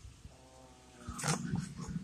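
Paper photographs being shuffled and picked up from a pile, a soft rustling and tapping starting about a second in, after a faint brief hum.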